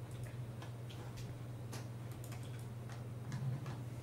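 Scattered faint clicks and small taps, several a second at irregular spacing, over a steady low electrical hum in a courtroom microphone feed.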